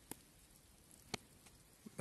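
Near silence with two sharp ticks about a second apart, the second louder: the first scattered raindrops of an approaching storm landing near the microphone.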